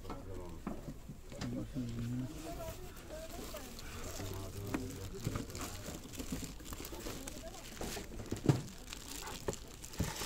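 Low, indistinct talk in a shop, with scattered handling clicks and rustles and one sharp knock about eight and a half seconds in.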